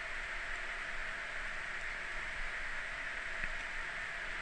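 Steady background hiss of the recording, with no distinct events.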